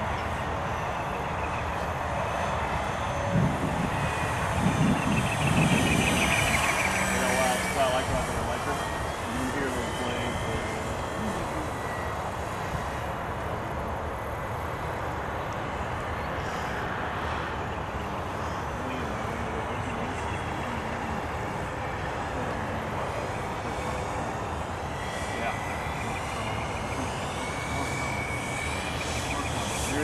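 Radio-controlled model PCA-2 autogyro in flight: a steady drone from its motor and spinning rotor over a noisy hiss. It grows louder around five to seven seconds in, and a faint whine glides in pitch near the end.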